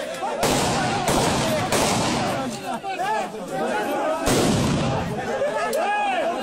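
Several loud sudden bangs, the first about half a second in and another past the four-second mark, each trailing off in a rush of noise, over a crowd's chatter.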